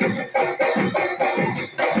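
Live Assamese Bihu music driven by dhol drums beating a fast rhythm.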